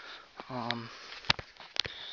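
A voice says a single short word, with several sharp clicks before and after it.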